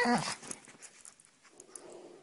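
A dog's short vocal answer at the very start, a pitched sound that falls in pitch and fades within about half a second. Only a faint low sound follows near the end.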